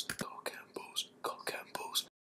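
A person whispering a few quiet words; the sound cuts off at the very end.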